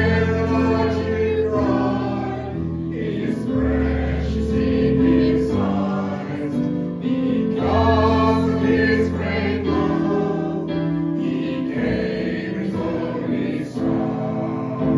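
Congregation singing a hymn together over instrumental accompaniment that holds long, steady bass notes.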